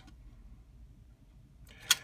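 Quiet room with one sharp click near the end: a steel ruler picked up off the plastic cutting mat.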